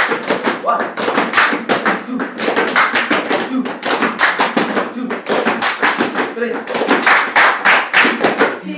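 Gumboot dancers slapping their rubber wellington boots with their hands and clapping together, a quick, even rhythm of sharp slaps, about four a second, from several dancers at once.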